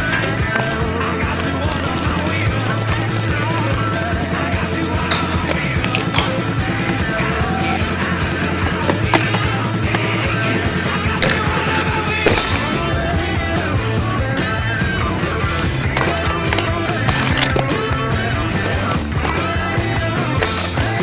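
A rock song with a stepped bass line plays throughout. Mixed in under it are inline skate wheels rolling and grinding on concrete, with sharp knocks from landings, the strongest about nine and twelve seconds in.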